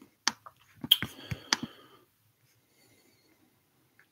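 A few sharp clicks and knocks in the first two seconds, then near silence.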